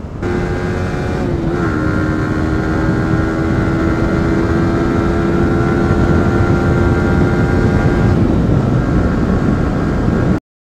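A Yamaha sport motorcycle's engine running steadily at highway cruising speed, around 105–110 km/h, over a constant rush of wind and road noise. The engine note holds a steady pitch, dipping slightly about one and a half seconds in and shifting again about eight seconds in.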